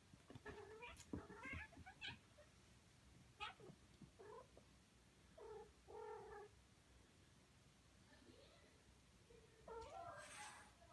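Siamese kittens meowing faintly a few times while they wrestle a plush toy, with soft knocks and rustling of the toy and cloth in the first couple of seconds.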